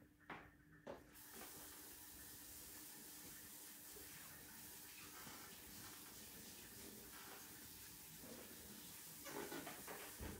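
Faint, steady hiss of a water tap running, switched on about a second in, as a paintbrush is rinsed.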